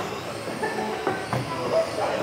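Radio-controlled model cars racing around an indoor hall track, their motors whining at shifting pitch over a steady wash of echoing hall noise, with a few short clicks.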